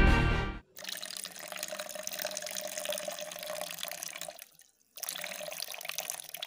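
Background music cuts off in the first second, then a sink tap runs water into a washbasin. The running water cuts out abruptly about four and a half seconds in and resumes half a second later.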